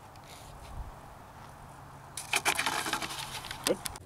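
Faint outdoor background, then about two seconds in, a loud burst of rapid clicking and rustling that stops just before the end.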